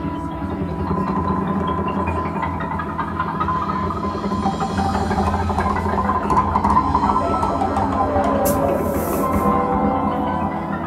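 Live band playing an instrumental passage on electric guitar, bass, keyboards and drums, with sustained chords and a run of stepping notes in the middle.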